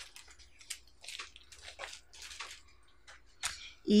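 Soft, scattered rustling and crinkling of a sheet of vinyl stickers being handled and moved on a tabletop, with a sharper click shortly before the end.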